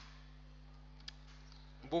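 A single short computer mouse click about a second in, over a faint steady electrical hum.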